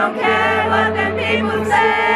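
Live pop concert music in an arena, with a crowd of fans singing along and voices singing loudly close to the microphone over sustained low notes from the band.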